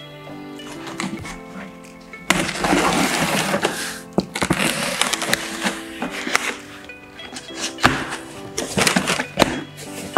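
Background music over a cardboard shipping box being opened by hand: packing tape slit and peeled off, with a long stretch of ripping about two seconds in, then cardboard flaps scraping and knocking as they are pulled open.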